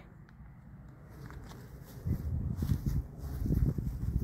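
Low, irregular rumbling and knocking on a phone microphone, starting about halfway in: wind buffeting and handling noise while riding an e-bike.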